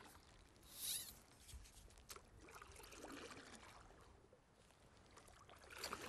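Near silence, with one brief, soft swish of water about a second in from a stand-up paddle blade pulling through calm water.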